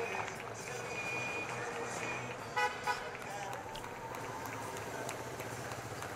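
Street sound of race convoy vehicles and security motorcycles passing, a steady traffic noise with a short horn toot about two and a half seconds in.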